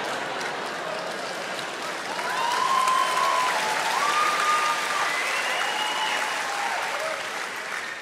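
Live audience applauding after a punchline, with a few voices cheering through the middle of the clapping.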